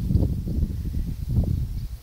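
Wind buffeting the microphone: an irregular low rumble that dies away near the end.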